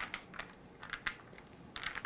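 A scattered, irregular run of light clicks as size 00 capsule caps snap onto their filled bodies under hand pressure on a 100-hole manual capsule filling machine's plastic plates.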